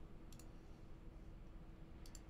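Near silence: faint room tone with a steady low hum, and one small, faint click about half a second in, typical of a computer mouse or keyboard click.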